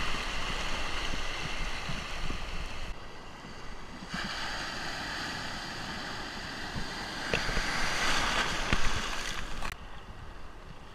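Breaking surf and rushing whitewater heard from water level, with wind on the microphone. The rush dips about three seconds in, comes back a second later, swells to its loudest near the end, then drops off suddenly.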